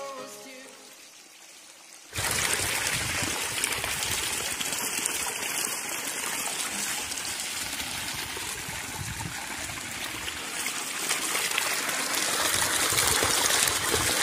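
Background music fades out, and about two seconds in a steady rush of water starts: water pouring from a PVC pipe into a small concrete tank and splashing over its edge.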